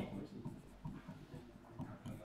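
A marker writing a word on a board: faint, short, irregular strokes of the tip.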